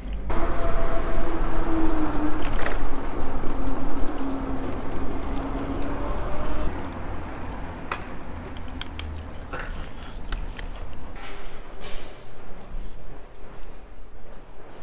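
Street traffic and wind noise while riding an electric bike through a city street, with a faint tone that slides up and down over the first several seconds. It then quietens, with a few sharp clicks and knocks.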